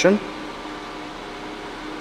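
Steady background hiss of an indoor room with a faint low hum, the kind of noise ventilation makes, after the last syllable of a spoken word at the very start.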